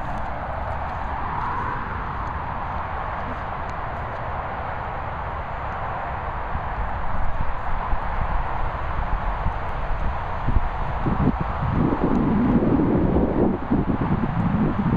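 Steady rushing of wind and handling noise on a handheld camera's microphone. About halfway through, irregular dull thuds and knocks start and grow louder toward the end, like footsteps and jostling of the camera on grass.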